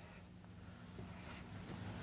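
Dry-erase marker writing on a whiteboard, faint strokes of the pen tip on the board.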